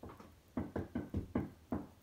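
Knocking: a quick series of about six knocks, starting about half a second in and about five a second.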